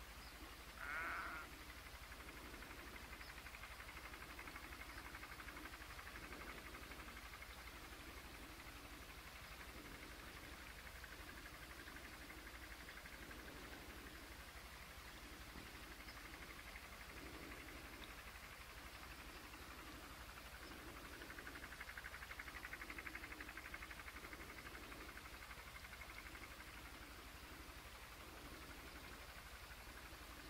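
Faint farm field recording, heard through a video call: a sheep bleats once, briefly, about a second in. Under it runs a soft low pulse about once a second, with a faint high hiss that swells in the second half.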